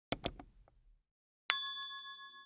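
Sound effects of a subscribe-button animation: two quick mouse clicks, then a bell chime about one and a half seconds in that rings with several pitches and fades.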